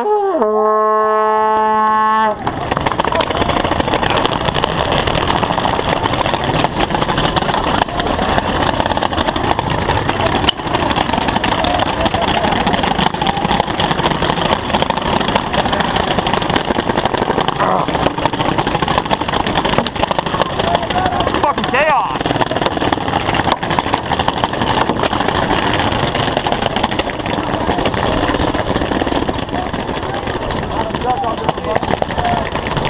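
An air horn sounds one steady blast for the first two seconds or so, signalling the start of the paintball game. A loud, continuous din of a large crowd of players charging and shouting follows, with scattered sharp pops.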